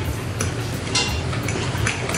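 Metal fork clicking and scraping against a ceramic plate while a bite of casserole with its cheese crust is cut and picked up, with a few sharp clinks spread across the moment.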